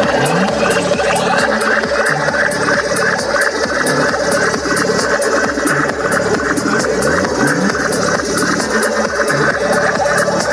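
Loud electronic dance music from a DJ set, played over large outdoor PA speaker stacks, with a steady beat and high ticks about twice a second.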